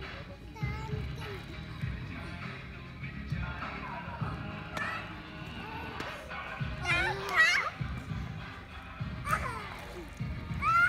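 Children's voices calling and squealing, loudest in a high shout about seven seconds in, with music playing underneath.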